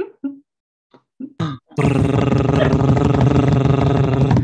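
A man's vocal drum roll: a rolled, buzzing 'drrr' held at one low pitch for about two and a half seconds, starting nearly two seconds in after a few short mouth sounds.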